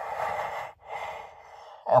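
A man's long, heavy breaths into the hands pressed over his face: a louder exhale, then a second, softer breath lasting about a second.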